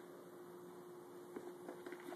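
Very quiet room tone with a faint steady hum, and a few soft taps in the second half from a Welsh terrier moving on a rug as it rolls over.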